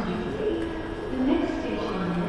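Indistinct, muffled speech, a low voice in short phrases, over a steady background hum.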